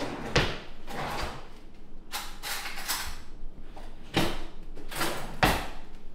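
A kitchen drawer pulled open and pushed shut, with metal cutlery clattering as a spoon is taken out: a series of knocks and short rattles spread over several seconds.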